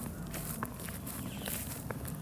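Footsteps on a grassy lawn, with a few light clicks over a low steady rumble.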